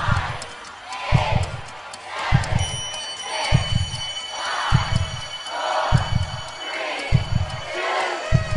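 Countdown intro soundtrack: a deep boom about every 1.2 s, one for each number, each followed by a crowd shouting. A steady high synth tone comes in about two and a half seconds in.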